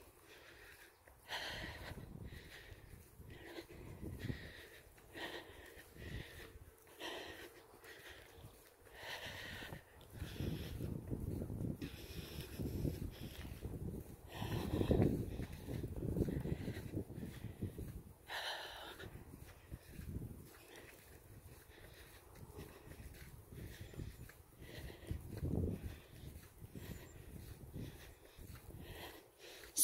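Heavy, wheezy breathing of a person walking on a dirt road, with regular footsteps on dirt and gravel about every two-thirds of a second. A low rumble swells in the middle.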